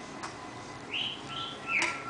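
Patagonian conure giving three short chirps, about a second in and again near the end, the last one loudest.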